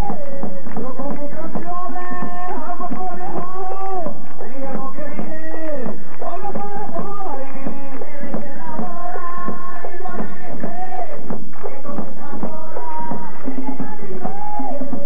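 Colombian tambora music: a voice singing a melody over hand-drum beats and percussion, with no break.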